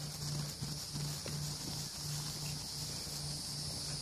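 A horse trotting on grass, its hoofbeats faint and muffled, under a steady high-pitched buzz of insects.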